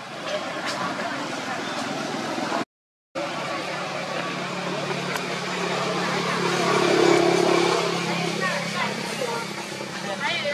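A motor vehicle passing by: its engine hum grows louder, peaks about seven seconds in and fades away, over indistinct background voices. The sound cuts out completely for about half a second near three seconds in.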